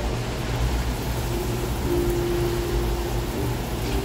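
Kitchen tap running a steady spray of water into a stainless steel sink while a ceramic mug is rinsed under the stream.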